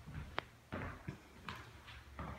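A single sharp click about half a second in, over faint low rumbles and scattered small noises.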